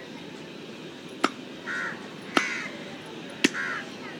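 A meat cleaver chopping chicken on a wooden log chopping block: three sharp strikes about a second apart. Between the strikes a crow caws twice.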